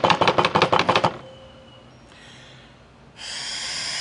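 A rapid run of pulses, about ten a second, for the first second, then a lull. About three seconds in, a steady hiss starts: breath blown into a handheld breathalyzer.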